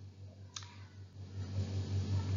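A single faint click about half a second in, over a low steady hum; the background noise grows louder in the second half.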